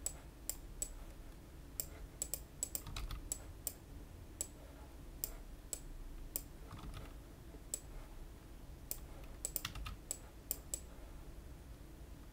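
Irregular sharp clicks of a computer keyboard and mouse, roughly two a second, bunched together about two to three seconds in and again near ten seconds.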